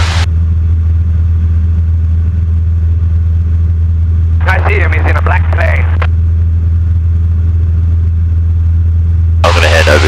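The Robin 2160's four-cylinder Lycoming piston engine and propeller running at a steady, even drone in flight, heard from inside the cockpit. A voice cuts in briefly about halfway through and again near the end.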